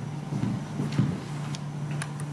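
A pause in speech: a steady low electrical hum in the room, with a few faint small clicks about one and a half seconds in.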